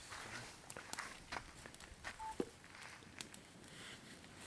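Faint, scattered snaps and crackles of twigs and kindling being handled and burning in small campfires, with light rustling.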